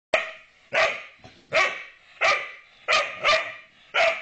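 Whippet barking six times in steady succession, about one bark every two-thirds of a second, while crouched in a play bow: play barks, the dog wanting to play with the cat.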